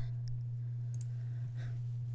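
Faint computer-mouse clicks, a sharper one about a second in, over a steady low hum.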